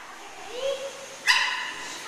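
A dog barks once, sharply, about a second and a quarter in, after a faint short sound about half a second in.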